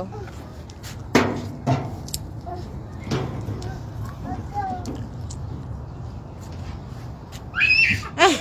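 Outdoor playground sounds under a low steady rumble: a few sharp knocks about one and three seconds in, faint distant voices, and a high-pitched voice that comes in near the end.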